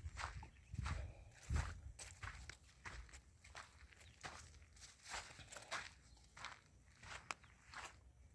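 Faint footsteps of a person walking over dry, sandy soil among watermelon vines, soft irregular steps about one to two a second.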